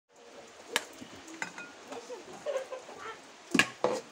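A metal utensil knocking and scraping against an aluminium pot while cuscuz is served out into a glass bowl: a few sharp clinks, the loudest two near the end, with soft scraping between them.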